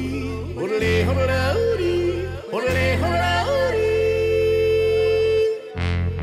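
A male singer yodels into a microphone, leaping quickly between low and high notes and then holding one long note, over live band backing from keyboard, acoustic guitar and electric bass.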